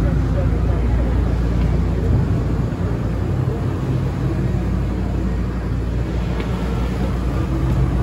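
A steady, loud low rumble under the indistinct voices of a crowd.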